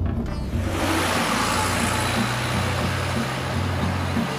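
A van driving along a road: a steady rush of vehicle and road noise that swells in under a second in. Background music with a low, even pulse runs underneath.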